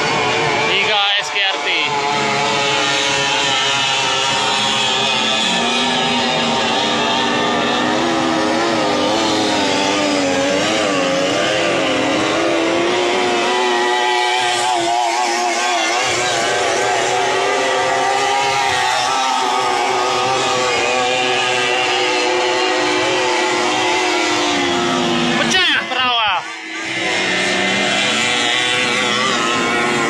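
Racing outboard engines of 30 hp three-cylinder powerboats running flat out as the boats speed past on the river. Several engine notes overlap steadily, and one climbs in pitch and holds through the middle as a boat passes close by.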